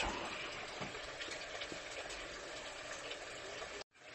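Circulating water in a saltwater nano reef aquarium: a steady, soft hiss of moving water. It drops out abruptly near the end.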